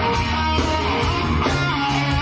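Live band playing pop music, led by electric guitar over a steady beat.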